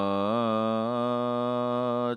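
A man's voice chanting a Sanskrit devotional verse, holding one long sung syllable on a steady pitch, with a slight waver about half a second in.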